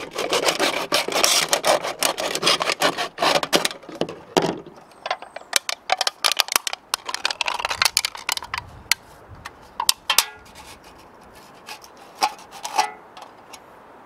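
A serrated knife sawing through the thin aluminium wall of a beer can: quick rasping strokes for the first four seconds or so. Then scattered clicks and crinkles as the cut aluminium can is handled and pulled apart.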